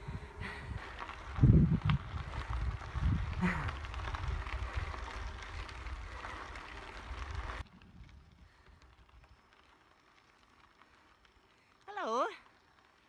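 Wind buffeting the microphone of a phone carried on a moving bicycle, a low rumble with louder gusts about one and a half and three seconds in. About two-thirds of the way through it cuts off suddenly to a much quieter stretch.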